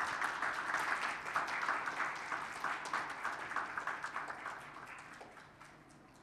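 Audience applauding, fading out over about five seconds.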